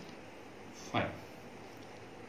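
A man says one short word about a second in; otherwise low, steady room tone.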